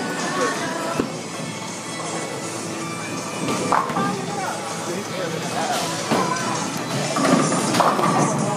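Bowling alley ambience: background music playing under people chatting, with a sharp knock about a second in.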